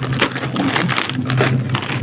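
Plastic snack-chip bags crinkling and rustling as they are handled and shifted about in a box, a dense, irregular crackle.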